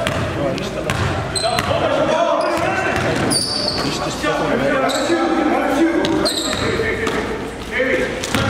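A basketball bouncing on a gym floor as it is dribbled, with short high squeaks from sneakers on the court a few times. Players' voices echo through the hall.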